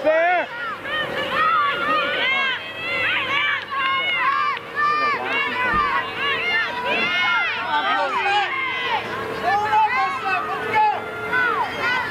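Many overlapping high-pitched voices of field hockey players and spectators calling out and cheering at once, no single voice standing out, with a faint steady tone underneath.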